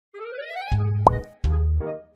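Playful children's background music: a sliding tone that rises in pitch, then bouncy notes with a strong bass beat about every three-quarters of a second, and a quick upward plop sound effect about a second in.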